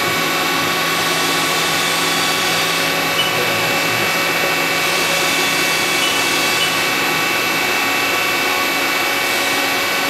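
CNC vertical machining center's spindle running at speed with its tool at an aluminium part: a steady whine of several tones over a broad hiss, with a few faint ticks.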